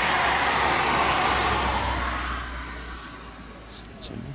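Rushing noise of a passing vehicle with a low rumble, loudest in the first two seconds and fading away by about three seconds in.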